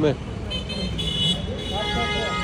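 Busy street traffic noise, with a vehicle horn sounding steadily near the end.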